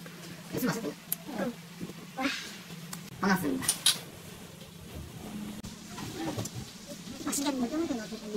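Voices at a table, with two glasses of beer clinked together in a toast about halfway through.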